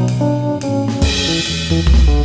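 Jazz combo music: a drum kit keeps time under low bass notes and chords, with a cymbal crash ringing on from about halfway through, and a solid-body electric guitar playing along.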